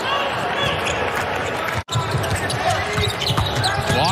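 Basketball game sounds from the court: a ball dribbled on a hardwood floor, with voices from the court, in a near-empty arena. The sound drops out for an instant just under two seconds in.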